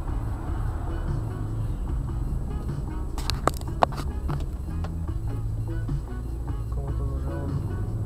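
Music from the car radio playing inside the cabin over the steady low drone of the car's engine and road noise. Two sharp clicks come close together about three and a half seconds in.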